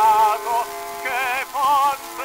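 Operatic tenor voice with orchestra, played from a 1911 acoustic-era 78 rpm disc: a few held sung notes with wide vibrato over sustained orchestral tones, the sound narrow and capped in the treble, with faint surface hiss.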